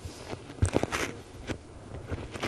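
A cluster of sharp clicks and short rustling scuffs about midway, then one more click, typical of handling or clothing noise.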